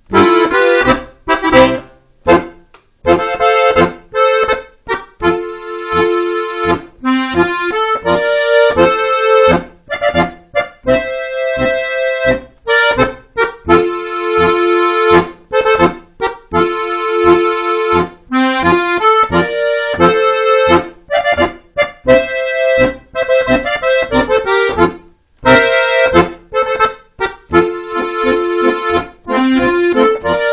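Starkrainer piano accordion playing a traditional dance tune, an Auftanz: held chords alternating with short, detached notes in a steady dance rhythm.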